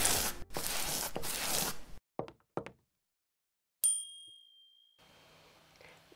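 Animated-logo intro sound effects: about two seconds of swishing, two short quick swishes, then a single bright ding that rings out for about a second.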